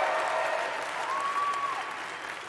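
Audience applauding and slowly dying down.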